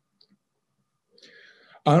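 A pause in a man's speech over a video-call microphone, almost silent apart from a faint mouth click, then a short breath drawn in just before he starts speaking again near the end.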